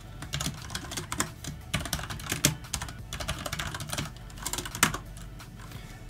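Typing on a computer keyboard: an irregular run of keystroke clicks as a line of code is entered.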